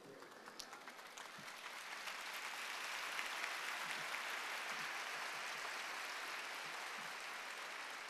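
A large crowd applauding, swelling over the first few seconds and then holding steady, easing slightly toward the end.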